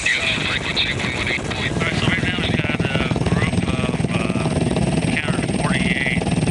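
Helicopter in flight, its rotor beating with a fast, even chop. Short bursts of crew voices on the radio break in twice.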